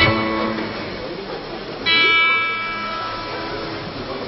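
Guitars on stage: a plucked note rings and fades right at the start, and about two seconds in a louder, bright ringing note sounds and dies away over about a second.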